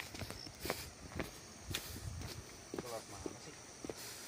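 Footsteps walking along a footpath, about two steps a second. A short pitched voice-like sound comes near three seconds in.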